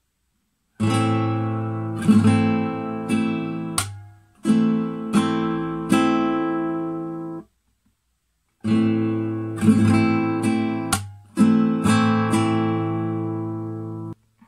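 Nylon-string classical guitar strummed in a slow rasgueado pattern on an A minor chord, played twice. Each round is a single stroke, a quick group of strokes ending in a sharp click, then three more strokes. The ringing chord is cut off suddenly at the end of each round.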